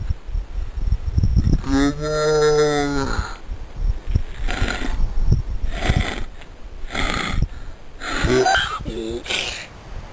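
A man's long, drawn-out vocal call held at one pitch for about a second and a half, followed by a run of breathy, hoarse vocal sounds and a short voiced cry near the end. Wind rumbles on the microphone throughout.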